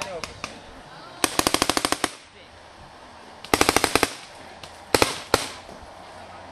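Paintball markers firing in rapid strings. A burst of about a dozen shots comes a second or so in, another burst of about eight follows past the middle, then two single shots near the end.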